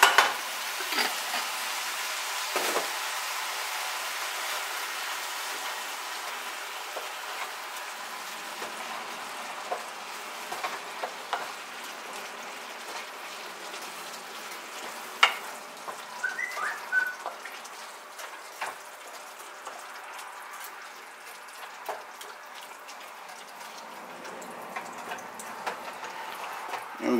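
Tomato sauce and ground beef sizzling in a hot saucepan just after the sauce is poured in, the sizzle slowly dying down. A wooden spoon stirring knocks and scrapes against the pan now and then.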